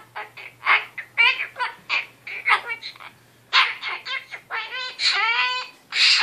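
Goffin's cockatoo chattering in a run of speech-like babble: quick bursts of short syllables with a brief pause about halfway, then a longer, drawn-out call near the end.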